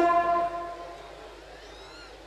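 A man singing one long held note, which dies away within the first second.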